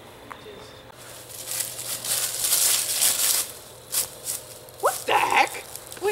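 Rustling and crashing noise through dry leaves and brush for a couple of seconds, with a sharp knock about four seconds in, then a short rising vocal cry near the end.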